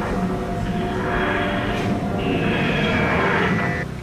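Music with sustained held tones and no beat, cutting off abruptly just before the end.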